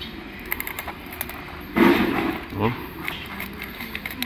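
Light metallic clicks and taps as a broken engine connecting rod and its bearing cap are handled, with a short rough noise just under halfway through.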